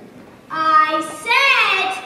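A girl's high voice singing two short phrases, the pitch rising and falling, after a brief lull.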